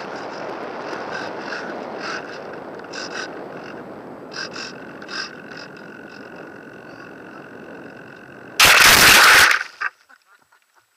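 Air rushing past a radio-controlled model plane's onboard camera with a faint steady whine and scattered light clicks, then a very loud crash of about a second as the plane, its rudder broken off, hits the ground and ploughs into grass. After the crash it goes quiet.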